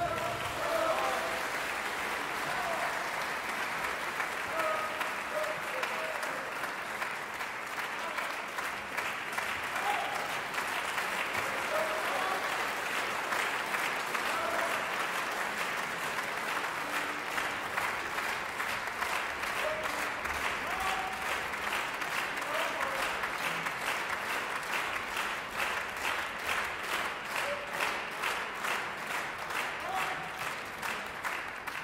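Theatre audience applauding after an orchestral ballet number, a dense, sustained clapping; in the last few seconds the clapping turns into more regular, evenly timed pulses.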